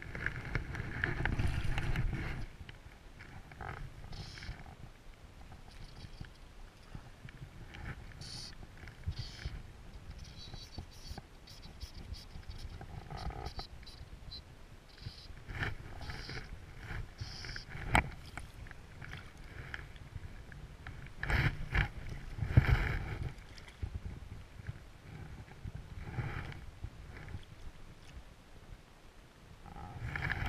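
Wind buffeting the microphone in uneven gusts, strongest at the start and again about three-quarters of the way through, with scattered clicks and knocks from handling the fly rod and landing net as a hooked trout is brought in; one sharp click stands out a little past halfway.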